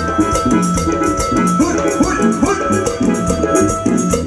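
Live band playing Latin dance music, with drums keeping a steady, even beat under bass and held melody notes.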